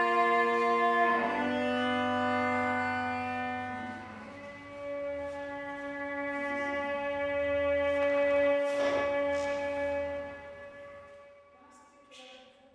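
Solo cello played with a curved bow, sounding long held chords on several strings at once. The chord changes about a second in and again about four seconds in, then dies away near the end.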